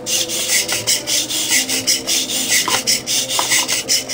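Small hobby servo motors in a biped robot's legs buzzing and grinding through their plastic gears as they drive a dance motion, a rasping noise in quick repeated pulses.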